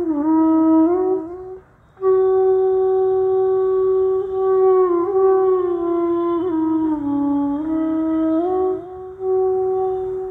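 Solo flute playing a slow melody in the Hindustani raga Jhinjhoti: long held notes joined by gliding slides, with a short pause about a second and a half in.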